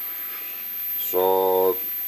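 Hubsan X4 H107L micro quadcopter's four small brushed motors and propellers running steadily at minimum throttle, a constant whirring hiss. A drawn-out spoken word comes over it about a second in.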